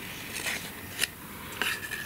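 Black cardstock pieces handled and pressed together by hand: soft rubbing and rustling of card, with a sharp tap about halfway through and a brief thin squeak near the end.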